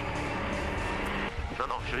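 In-cabin noise of a rally-raid buggy driving over a desert track: a steady engine drone over rumble from the running gear. The sound changes abruptly about two-thirds of the way through as a voice begins.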